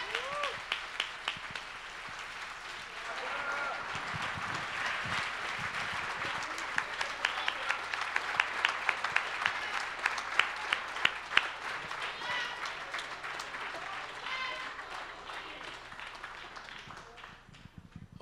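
Audience applauding, with scattered voices and calls from the crowd mixed in. The clapping grows thickest midway and dies away near the end.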